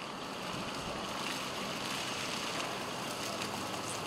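Steady outdoor background noise on a wet street: an even hiss with no distinct events.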